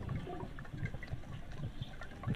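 Faint underwater sound of lake water: a low, uneven wash with small scattered pops, as in footage from a diver's underwater camera.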